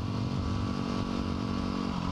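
Yamaha WR250R's 250 cc single-cylinder four-stroke engine running at a steady cruise in gear, its pitch holding level, heard from the rider's helmet with wind rush.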